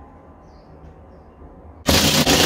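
Quiet room noise, then near the end a cordless drill starts up loudly, driving a screw through a light panel into the wooden ceiling.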